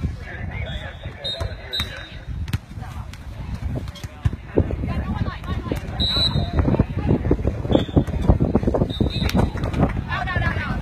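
Wind buffeting the microphone with a gusty low rumble, over the hits and players' calls of an outdoor beach volleyball rally. A few short high-pitched tones sound now and then.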